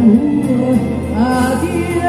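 Live dance-band music with singing. About a second in the melody rises, and it ends on a held, wavering note.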